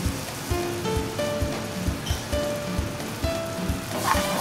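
Background music with a steady beat and a stepping melody, over the steady hiss of curry sizzling in a metal pan on a gas burner.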